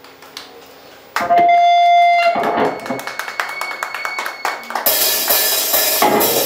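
Live heavy metal band starting a song: electric guitar comes in about a second in with a loud held note, then plays on, and the full band with drums joins near the end.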